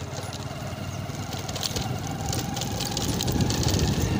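Motorcycle engine running while riding along a rough dirt track, growing steadily louder.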